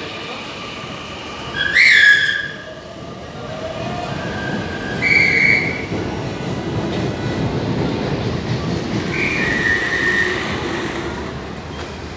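A Mexico City Metro Line 12 train (CAF FE-10 stock, steel wheels on rail) rumbling through the station, the rumble swelling over the middle seconds. Three short high-pitched squeals ring out over it, the loudest and rising about two seconds in, another near the middle and a last one near the end.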